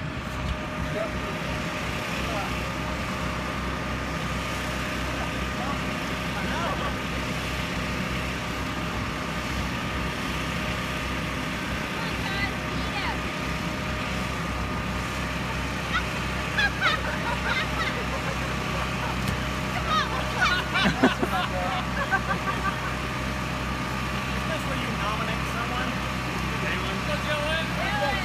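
Steady mechanical hum with constant tones from an electric air blower keeping an inflatable jousting arena inflated.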